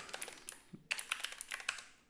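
Typing on a computer keyboard: a quick, irregular run of about a dozen key clicks as a terminal command is entered.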